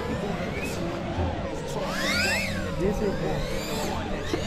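FPV racing quadcopter motors whining, with a steady hum and a pitch that rises and falls near the middle as the throttle is worked.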